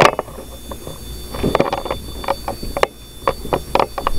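Handheld EMF meter giving a steady high electronic tone, two pitches held together, while it picks up a reading. Scattered sharp clicks and knocks of handling and movement sound over it.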